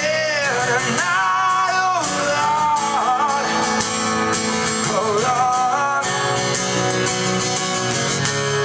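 Live band performance led by acoustic guitar, with a voice singing long, wavering wordless notes over the music.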